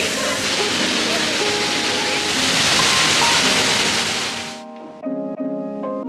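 A steady rush of water from a large fountain, with the murmur of a busy crowd, swelling slightly and then cutting off abruptly about four and a half seconds in. Soft background music with sustained keyboard notes follows.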